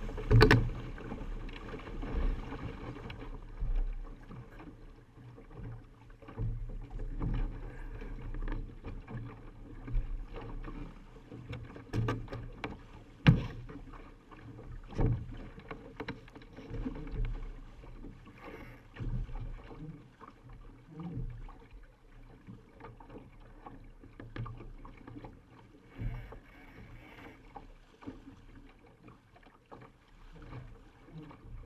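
Laser dinghy sailing through choppy water, heard from a camera on its deck: water rushing and slapping against the hull, with irregular knocks and slaps, the loudest about 13 seconds in.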